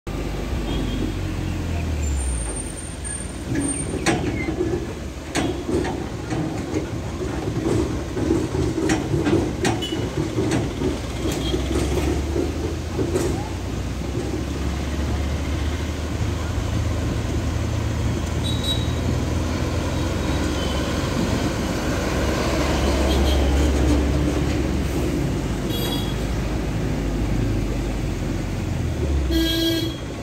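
Engine and road noise of a moving vehicle heard from on board, a steady low rumble with scattered rattles and knocks. A horn toots briefly near the end.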